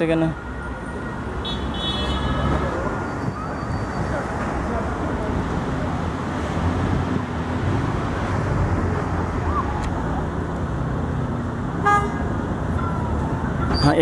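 Steady street traffic noise, with a brief high car-horn toot about two seconds in.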